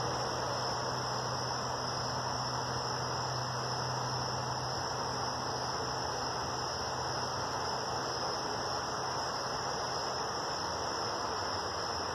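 Steady, unbroken chorus of night insects, crickets, shrilling high, with a low hum underneath.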